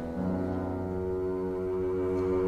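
Double bass bowed, sounding one long, low sustained note that begins just after the start.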